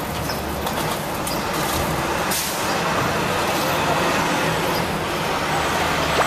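City street traffic noise: a steady rumble and hiss of passing vehicles, with a short sharp burst of noise about two and a half seconds in.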